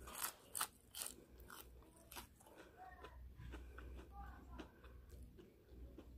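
Shrimp breaded in crushed Cheetos being bitten and chewed close to the microphone: quiet, crisp crunches, thickest in the first two seconds and thinning out after.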